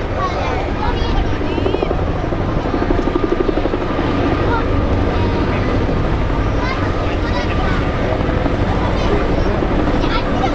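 Military helicopters flying in formation, a loud, steady rotor beat with turbine noise that swells slightly a few seconds in.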